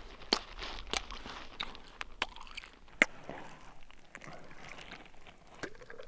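Snow crust crunching in irregular crunches and clicks: a hard crust breaking through onto a soft layer underneath.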